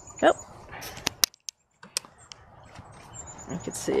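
Backyard hens in their coop, one giving a short call that slides down in pitch, while the coop's wire-mesh door and latch give several sharp clicks. A faint, thin, high whistling tone is heard twice.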